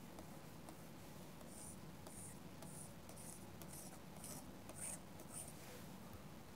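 Faint scratches of a stylus drawing straight lines on a pen tablet, about eight quick strokes roughly two a second, over a low steady room hum.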